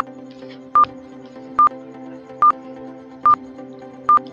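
Quiz countdown-timer beeps: five short beeps of one pitch, evenly spaced a little under a second apart, ticking off the seconds. Under them runs a quiet, steady background music bed.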